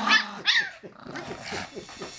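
A dog barking and growling at play, with one sharp, high bark about half a second in, then softer low growls.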